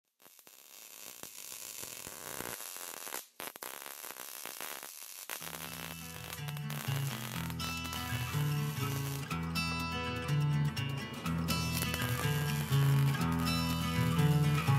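Crackling hiss of an electric welding arc for the first five seconds, with a brief break partway. Background music with held, changing notes then comes in and takes over for the rest.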